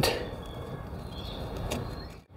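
Screwdriver tip scraping crumbly rotten wood out of a timber slat: a faint, soft scratching without sharp knocks, over a steady low background rumble.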